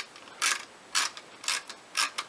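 A ratcheting screwdriver clicking as it backs a screw out, in four short bursts about half a second apart, one with each return turn of the handle.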